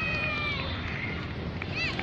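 Young cricketers' high-pitched voices calling out across the field over outdoor background noise: a drawn-out high call fades in the first half second, and a short high yelp comes near the end.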